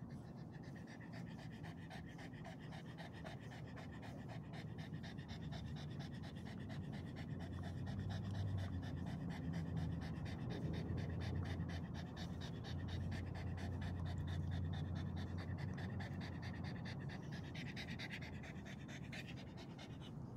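A black pug panting rapidly and steadily, close up, a little louder in the middle stretch.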